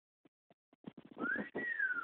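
A person whistling one note that rises and then slides down in pitch, with a breathy edge, after a few faint ticks.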